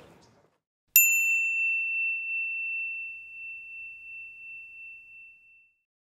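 A single bright, bell-like ding about a second in, ringing out and slowly fading over about five seconds.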